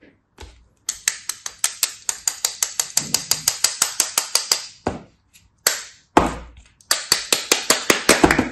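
A block of kinetic sand being sliced with a small blade: a fast, even run of crisp, crunchy cuts, about six or seven a second. The run stops about five seconds in, a few single cuts follow, and a second fast run starts about a second before the end.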